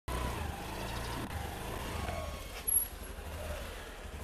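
Outdoor street background with distant road traffic running steadily. A single short, sharp clack about two and a half seconds in.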